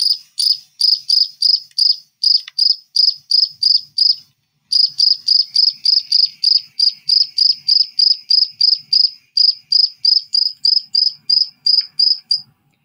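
A cricket chirping as it rubs its wings together: an even run of short, high chirps, about four a second, with a half-second break about four seconds in. Played back through a phone's speaker.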